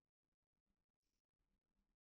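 Near silence: a pause in the talk, with the audio all but gated out.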